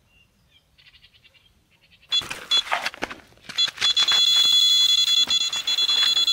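Electronic carp bite alarm signalling a run, a fish taking line: faint beeps about a second in, then from about two seconds in rustling noise with broken beeping, settling into a continuous high-pitched tone for the last two seconds.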